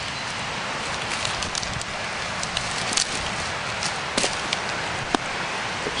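Steady rushing of water from the flooded brook, with scattered snaps and crackles of twigs and bark in the leaf litter, the sharpest about four seconds in.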